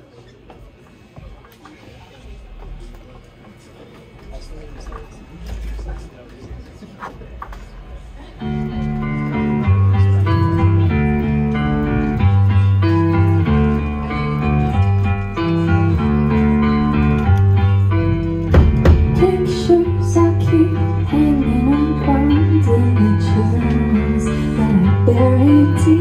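A live rock band starting a song: after several seconds of low room murmur, electric guitars, bass guitar and drums come in together about eight seconds in and play a steady, repeating riff, with a wavering higher line joining later.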